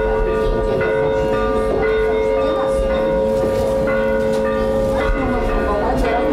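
Russian Orthodox church bells ringing: several bells struck in turn, a new strike a little more often than once a second, over long ringing notes.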